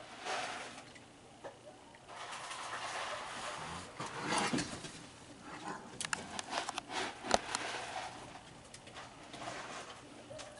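Raccoon dabbling its front paws in the water of a plastic kiddie pool, with bouts of splashing and a run of sharp clicks and knocks around six to seven seconds in.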